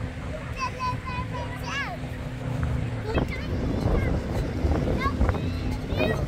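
Windy lakeside beach sound: wind rumbling on the microphone, with children's high-pitched voices calling out a few times in the background.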